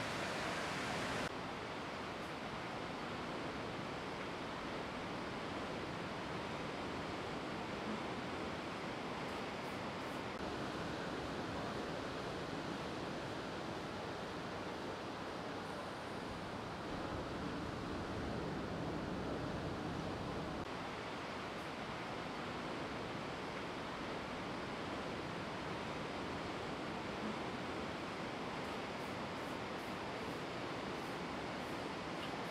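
Steady wash of ocean surf breaking on the shore, an even noise with no distinct events, shifting slightly in level and tone about a second in and again near the middle.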